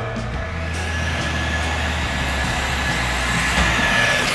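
Traxxas Bandit electric RC buggy driving fast across concrete: a steady motor whine over a hiss of tyre noise, building slightly, with background music underneath.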